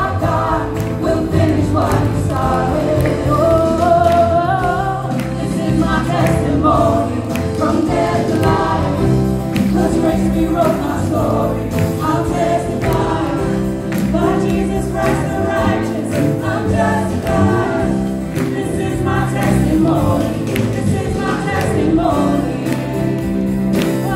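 Live gospel praise song: a female lead singer and several voices singing together over electric bass guitar and drums keeping a steady beat.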